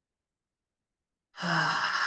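A woman's breathy sigh with a little voice in it, a deep exhale about a second long that starts well past halfway, after dead silence.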